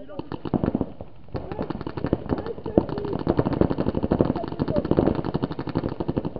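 Paintball markers firing in rapid strings of shots: a burst in the first second, a brief lull, then near-continuous fast firing to the end. Voices shout over the shooting.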